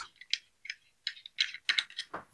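Small threaded stopper being unscrewed from the bottom of a tripod's center column: a scatter of light clicks and ticks.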